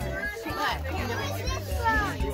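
Children's excited voices and chatter over background music with a steady low bass line.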